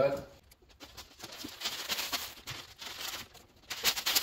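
Plastic wrapping on a vehicle side step crinkling and rustling as the step is pulled out of a long cardboard box, with rubbing against the box, loudest near the end.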